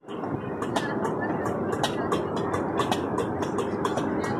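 Irregular sharp metallic clicks and clanks, a few a second, from a Turkish ice cream vendor working the metal lids and rod of his cart. Under them is a steady murmur of crowd chatter.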